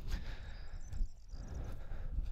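Quiet open-air background: a low rumble of wind and handling on the microphone, with a few faint high chirps about half a second in.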